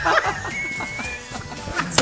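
Background music, with a short thin high whine from about half a second to just past a second in.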